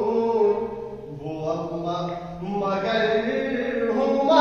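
A solo male voice singing a manqabat, a devotional poem in praise of Imam Mahdi, unaccompanied, holding long sliding notes. The voice drops softer about a second in and swells again toward the end.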